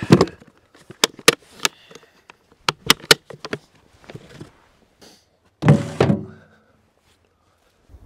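A plastic hard-shell case being shut and latched: a run of sharp separate clicks and snaps as the lid closes and the front latches are pressed home, then a heavier bump about six seconds in.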